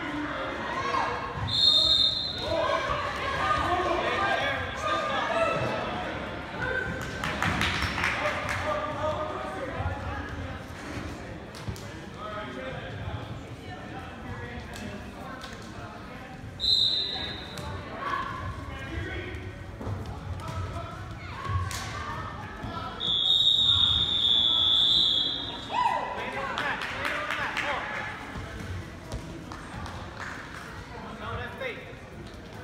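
Chatter and shouting from a crowd in a gymnasium, with three shrill whistle blasts from wrestling referees: a short one about two seconds in, another around seventeen seconds in, and a longer blast lasting about two seconds a little past twenty seconds.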